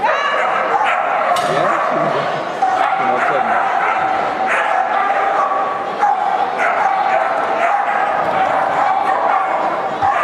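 A dog barking and yipping repeatedly, with people's voices in the background.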